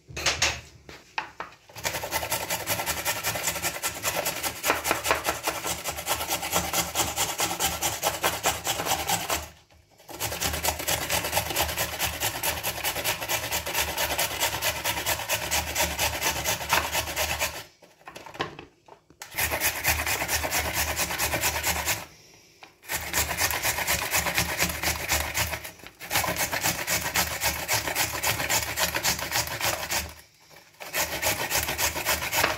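Raw carrot being grated on a flat hand grater with a stainless steel grating face, in rapid back-and-forth scraping strokes. The grating stops briefly four times and then resumes.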